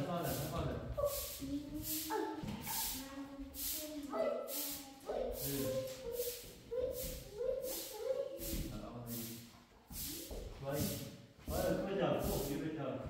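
People talking, over a steady run of short swishes, about two to three a second, from a hand broom sweeping a bare cement floor.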